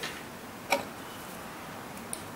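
A single sharp click about three-quarters of a second in, a metal folding knife knocking as it is picked up off a wooden board, with a fainter tap at the start.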